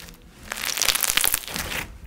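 Crunchy white bead slime squeezed and pressed by hand, giving a dense run of crackles and crunches. It starts about half a second in and breaks off briefly near the end.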